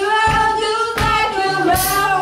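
Live band: a woman singing long held notes over drums, which hit about every three-quarters of a second, with a cymbal splash near the end.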